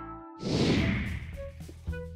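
A whoosh sound effect about half a second in, fading away over about a second, over quiet background music.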